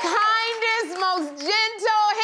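A high singing voice carrying a melody, holding notes and stepping and sliding between them.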